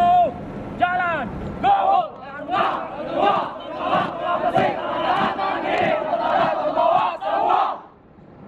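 Cadets' group yell: a single voice shouts a few drawn-out calls, then the whole squad joins in a loud shouted chant in unison for about five seconds, cutting off abruptly near the end.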